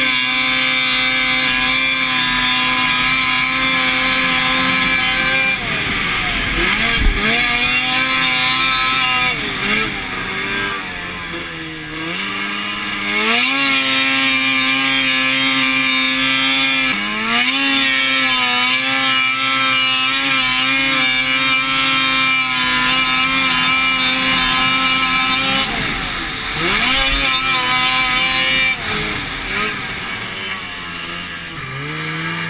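Snowmobile engine running at high revs under the rider, steady for long stretches. Its pitch falls and climbs back several times as the throttle is eased and reopened: about a third of the way in, around halfway, and again near the end.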